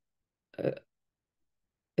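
A single short hesitant 'uh' from a person's voice about half a second in, with silence around it.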